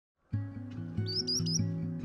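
Background music with low notes starts about a third of a second in. About a second in, a bird calls three short, high, slurred notes over it.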